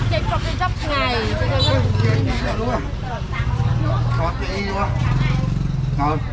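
Busy market ambience: several people talking in Khmer close by, over a steady low engine hum that drops away briefly mid-way and comes back.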